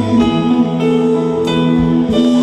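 Live band music: acoustic guitars played with held keyboard notes, a short instrumental passage with no singing.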